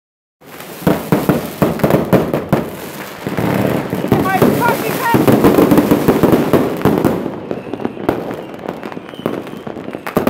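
Firecrackers and fireworks going off: a rapid string of sharp bangs, then a dense crackling volley that thins to scattered pops after about seven seconds.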